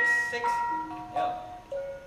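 Bronze gamelan metallophones struck note by note, each note ringing on as the next sounds, a new note about every half second.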